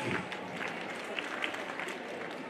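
An audience applauding at the close of a speech, with a few sharper individual claps standing out.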